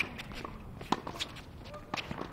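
Tennis sounds on a hard court: three sharp knocks of a tennis ball about a second apart, with players' footsteps.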